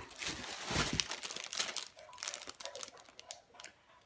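Paper and plastic gift packaging crinkling and rustling in the hands as it is unwrapped, with a light bump about a second in. The crackling thins out and dies away near the end.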